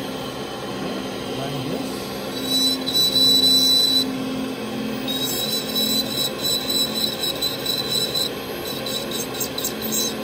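Dental lab micromotor handpiece spinning a bur and grinding into a gypsum stone model, throwing off powder. Its thin, high whine comes in about two and a half seconds in, breaks off briefly, and returns for about three more seconds.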